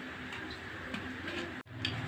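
A few light, irregular clicks and taps of bamboo and plywood model pieces being handled, over a steady low hum; the sound drops out for an instant near the end.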